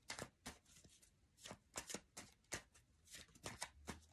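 Tarot cards being handled and shuffled in the hand: an irregular string of faint, quick card clicks.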